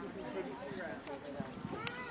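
Faint hoofbeats of a show-jumping horse cantering on sand footing after clearing a fence, under a woman's voice.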